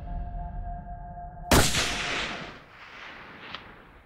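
A single rifle shot from a scoped Winchester hunting rifle about a second and a half in: one sharp crack with a long echo trailing off over the next second or so.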